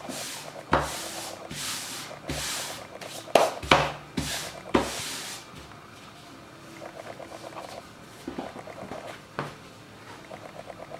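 Hands rubbing and smoothing fabric flat onto glued cardboard on a wooden tabletop: a run of brushing swishes with a few knocks in the first half, then quieter, lighter rubbing.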